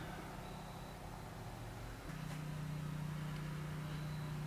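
A faint low steady mechanical hum, with a stronger steady tone joining about halfway through.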